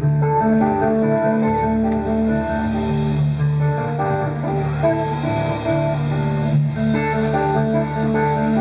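Live instrumental rock: an electric guitar, a Gibson Flying V, plays a steady run of short repeating notes over sustained low notes and a drum kit.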